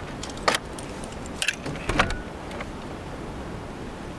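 Keys jangling and clicking as a key is worked in the lock of a metal door, with a few sharp clicks in the first two seconds.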